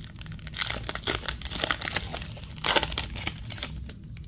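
Baseball card pack wrapper being torn open and crinkled by hand: a dense, irregular crackling, louder for a moment about two-thirds of the way through.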